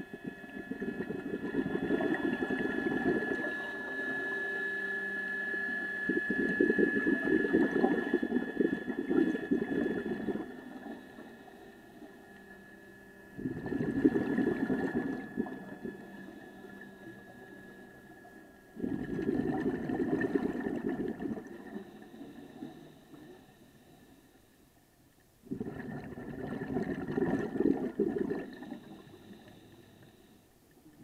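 Scuba diver's regulator exhaust bubbles, heard underwater: four long bursts of bubbling a few seconds each, one exhalation at a time, with quieter gaps for the breaths in between.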